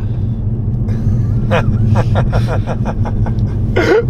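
Steady low drone of a moving van's engine and road noise heard inside the cabin, with a man laughing in a quick run of short bursts from about a second and a half in.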